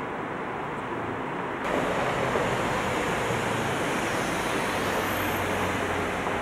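Steady city street noise of road traffic, a continuous wash with no distinct events, stepping up louder about a second and a half in.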